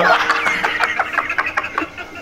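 Men laughing: a falling whoop, then a fast run of short laughing pulses, over a steady low held tone.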